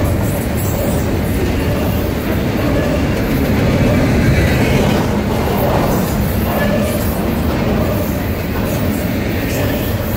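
Double-stack container well cars of a freight train rolling past at close range: a steady, loud rumble of steel wheels on the rails.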